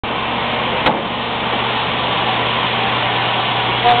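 Tunnel ventilation blower running steadily: a constant rushing noise with a low hum underneath. A single sharp click sounds just under a second in.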